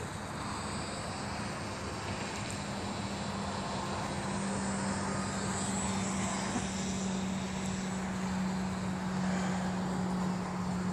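Radio-controlled model airplane's motor and propeller running steadily in flight at one even pitch, growing louder toward the end.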